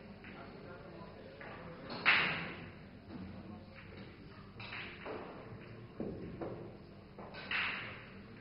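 Sharp clacks of pool balls from play at other tables in a large billiard hall, each with a short ringing tail; the loudest comes about two seconds in, with a few quieter ones later. A low murmur of voices runs underneath.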